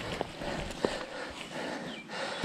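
Dry leaves and dirt rustling and crunching, with a few sharp knocks, as a fallen mountain biker pushes himself up off a leaf-covered forest trail.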